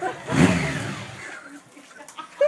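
Motorcycle engine blipped once during a burnout, its pitch rising and falling back over about half a second, then dying away just past a second in.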